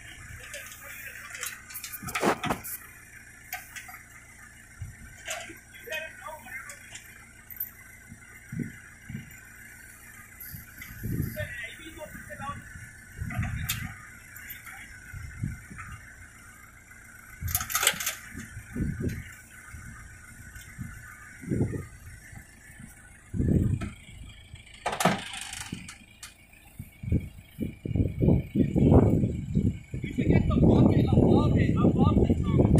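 Volvo BL60 backhoe loader's diesel engine running steadily under load, with men's voices calling out at intervals and some knocks.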